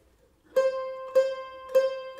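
A mandolin plucking three notes of the same pitch, about 0.6 s apart, each left to ring, starting about half a second in after near silence.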